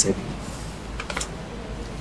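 A short run of light clicks on a computer keyboard about a second in, over a steady low room hum.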